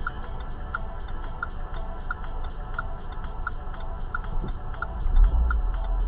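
A car's turn-signal indicator clicking steadily inside the cabin, about three clicks every two seconds, over a low engine and road rumble that swells near the end.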